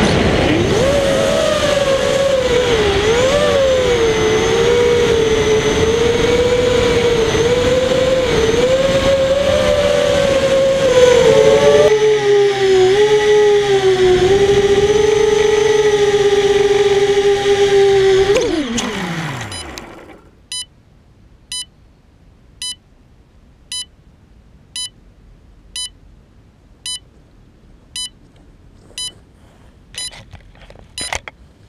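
ImmersionRC Vortex 285 FPV racing quadcopter's brushless motors and props whining as heard from its onboard camera, the pitch rising and falling with the throttle. About two thirds of the way in, the whine drops steeply in pitch and dies away as the motors spool down. A short electronic beep then repeats about once a second.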